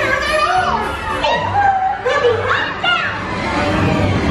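Dark-ride soundtrack: music with high-pitched, excited voices whose pitch swoops up and down.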